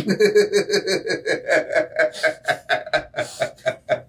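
People laughing hard, in quick breathy bursts about four a second.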